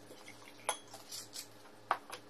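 A bottled drink being poured into a drinking glass, with short sharp clinks of bottle and glass, one just under a second in and a louder one near the end.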